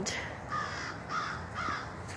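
Three short bird calls about half a second apart.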